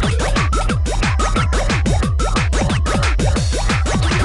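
Hardtek electronic music: a fast, steady run of distorted kick drums, each dropping steeply in pitch, under a short repeating high synth figure.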